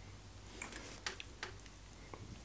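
Faint wet chewing and mouth smacks from people eating fufu and soup by hand: a few sharp clicks about half a second apart over a low steady hum.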